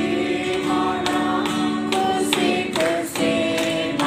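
A small group of men and women singing a song together, accompanied by a strummed acoustic guitar.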